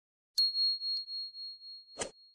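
Notification-bell sound effect from a subscribe-button animation: a click and then a single high, bright ding that rings on and fades away over about a second and a half. A faint click comes about a second in and a short click near the end.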